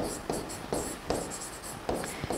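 Writing in white on a blackboard: a run of short, light scratching strokes as words are written.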